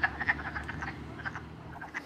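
Frog chorus: many short croaking calls repeating and overlapping, over a low steady hum.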